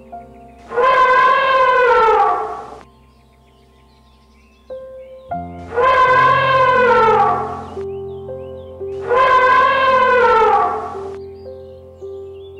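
African elephant trumpeting three times, each brassy call about two seconds long and falling in pitch at its end. Background music plays underneath.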